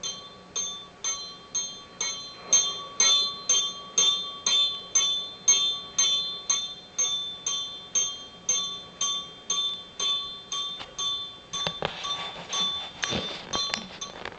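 A bell struck over and over, about two strikes a second, each stroke ringing at the same pitch. A rougher clattering noise joins near the end.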